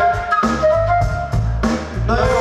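Live hip-hop band music: a drum kit beat with heavy bass and a held melodic line on top.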